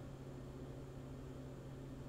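Faint room tone: a steady low hum with a light hiss, and no distinct events.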